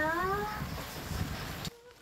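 A woman's voice drawing out the last syllable of a spoken apology in a long, wavering tone. This is followed by steady background noise, which cuts off abruptly near the end to a much quieter background.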